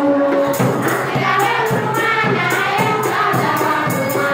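Group of women singing together with a repeated percussion beat, sharp strikes coming about two or three times a second.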